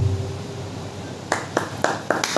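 A sung phrase with ektara accompaniment ends, and the instrument's ringing fades away. Just over a second later come three short, sharp claps or knocks.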